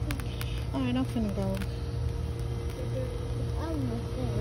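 Short stretches of indistinct talking in a high, childlike voice, about half a second in and again near the end, over a steady hum and a low rumble.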